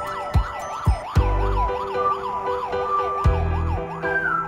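An ambulance siren in yelp mode, its pitch rising and falling about two or three times a second, heard over background music with steady notes and drum hits.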